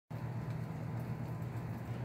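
Steady outdoor background noise with a constant low hum under an even hiss, and no distinct events.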